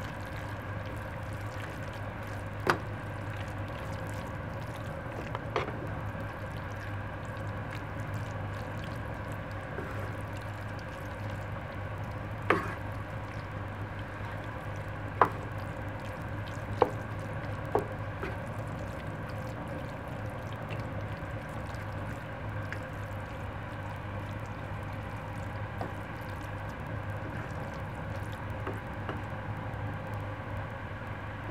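A wooden spoon stirring a thick, creamy shredded-chicken filling in a pan: wet, squishy stirring with a few sharp knocks of the spoon against the pan, over a steady low hum.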